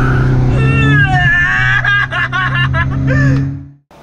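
A car engine droning steadily inside the cabin, with voices laughing over it; the sound cuts off abruptly just before the end.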